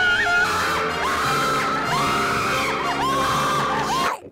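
Women screaming one after another, long high-pitched shrieks that waver and glide, over held music.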